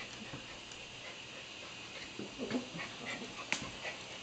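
Small dogs at play: a few brief, faint whimpers from a dog a little past halfway, then a single sharp click near the end.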